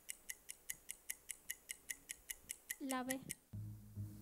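Game-show countdown timer sound effect: rapid, even clock-like ticks, about six a second, that stop a little past three seconds in. A low rhythmic music bed then comes back in.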